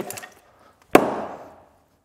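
A single blow of a small hand-forged axe splitting kindling on a wooden stump: one sharp crack about a second in that fades over about half a second.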